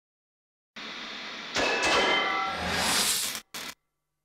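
Electronic sound effects of a TV production-company logo sting. A soft static hiss comes in under a second in, then a louder rushing sweep with a few steady high tones, which cuts off abruptly. A short final burst follows.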